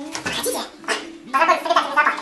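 People's voices talking, the words unclear, getting louder and busier about a second and a half in.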